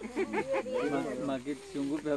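A soft voice speaking in short phrases, its pitch moving up and down.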